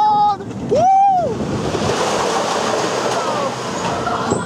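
Riders on a roller coaster whoop twice in the first second or so. After that comes a steady rush of wind and the rolling of the coaster train as it runs back into the station.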